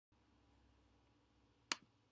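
A single sharp click about one and a half seconds in, over a faint low hum.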